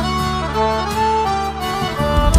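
Live forró band music without singing: a slow melody of held notes over sustained bass notes.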